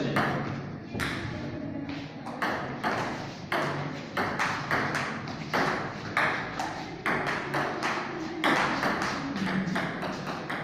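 Table tennis rally: the ball clicking sharply off the table and the paddles in a quick, uneven run of hits, two or three a second.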